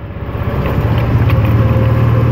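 Side-by-side utility vehicle's engine picking up speed as it pulls away, growing louder over the first second and then running steady.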